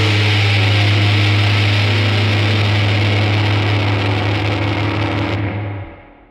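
Final chord of a live rock band ringing out: crash cymbals and distorted electric guitar and bass held over a low note. The cymbals are cut off a little past five seconds, and the held chord stops just before six seconds, leaving only a short decay.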